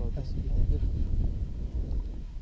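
Wind buffeting the camera's microphone in uneven gusts, with low, indistinct voices under it.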